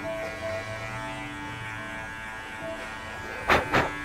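Electric hair clippers fitted with a grade 3 guard buzzing steadily as they run up the back of the head, blending the line higher, with faint background music. Two short, sharp, louder sounds come near the end.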